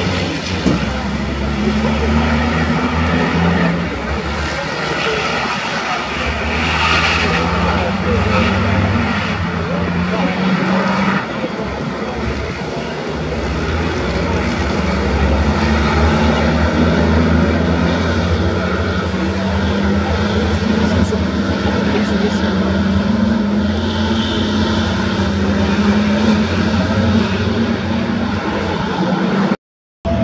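Diesel engines of racing trucks running on the circuit, a continuous drone whose pitch slowly rises and falls as the trucks accelerate and lift, with more than one truck at once. The sound cuts out briefly near the end.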